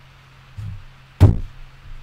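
A tap on the table under the microphone: a soft thump about half a second in, then a loud, sharp knock a little past one second that dies away quickly.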